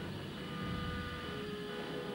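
Jet aircraft engine running: a steady whine over a low rumble, its pitch edging up partway through.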